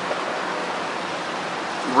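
Steady, even rushing outdoor background noise with no distinct events.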